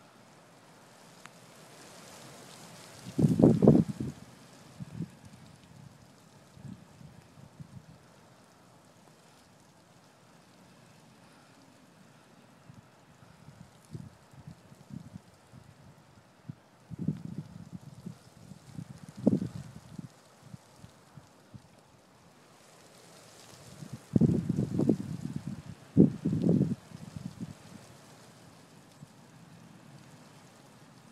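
Wind buffeting the microphone in irregular low rumbling gusts, loudest a few seconds in, again midway and near the end, over a faint steady background hiss.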